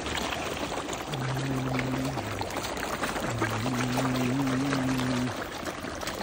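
Water splashing and churning as a dense crowd of carp and koi thrash at the surface, feeding. A low, steady droning tone sounds twice over it, held a second or two each time.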